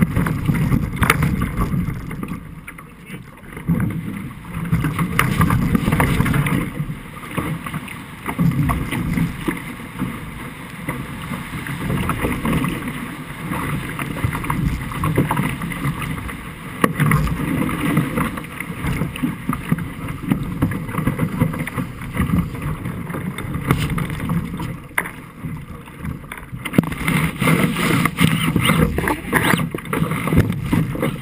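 Wind buffeting the microphone and water rushing and splashing along the hull of a Musto Performance Skiff sailing fast in gusty wind, the noise surging and easing every few seconds.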